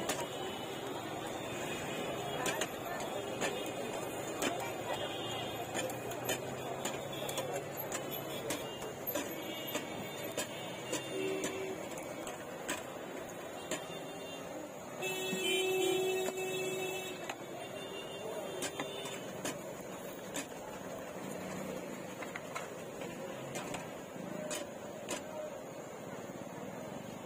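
Busy street-stall background: indistinct chatter and traffic noise with scattered small clicks and taps. A louder tone lasts about two seconds roughly fifteen seconds in.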